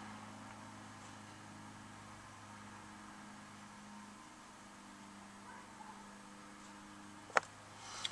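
Quiet car cabin with the ignition on and the engine off: a faint steady low hum, and one short sharp click near the end.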